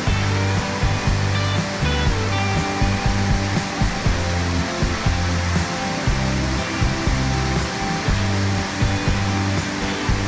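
Steady roar of a large waterfall, white water pouring over a wide rock ledge into the pool below, with music playing underneath, its low notes shifting every second or so.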